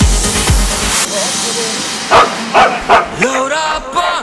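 Electronic dance music whose thumping beat drops out about a second in. About two seconds in a dog barks three times in quick succession, loud, then singing begins near the end.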